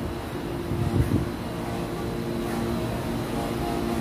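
Steady low mechanical hum with a constant drone, a low rumble swelling briefly about a second in.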